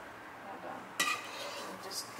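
Cooking utensil stirring and scraping meat around a nonstick frying pan, with a sharp clink against the pan about a second in.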